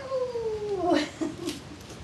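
A baby's high-pitched squeal, drawn out and falling in pitch over about a second, followed by a few short vocal sounds and a couple of brief sharp clicks.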